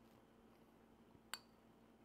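A metal spoon clinks once against a soup bowl, a single short tap with a brief ring, in near silence.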